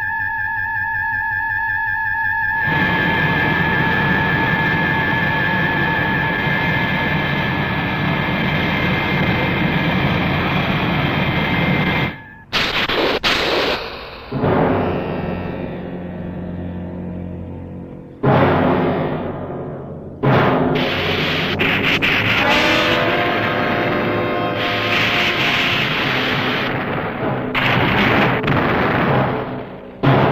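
Film sound effects mixed with music: a steady, warbling jet-engine whine of a flying craft for roughly the first twelve seconds, then a sudden break and a series of loud booms and rumbles, several of them in a row near the end.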